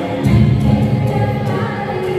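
Music with a group of voices singing together, held notes over a light regular beat.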